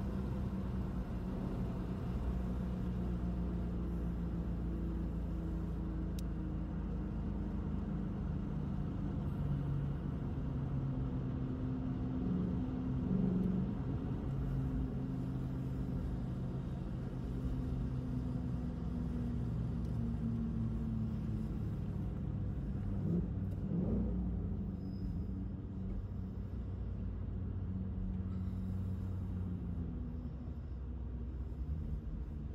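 2017 Ford Mustang GT's 5.0-litre V8 running at low revs, heard inside the cabin, its note sinking slowly as the car slows from about 50 mph to about 20 mph.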